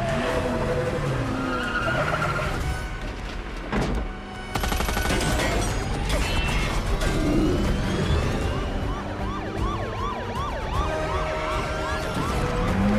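A film chase mix: police sirens wailing with slow rising and falling tones, then switching to a fast yelp of about three sweeps a second in the second half, over score music and vehicle noise.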